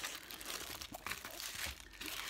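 Crinkling, rustling wrapping on a rolled diamond-painting canvas as it is unrolled by hand, with a few small crackles.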